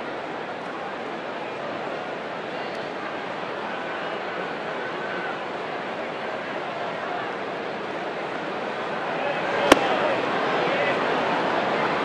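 Ballpark crowd murmuring steadily, with a single sharp pop nearly ten seconds in as a changeup lands in the catcher's mitt for a ball. The crowd rises slightly after it.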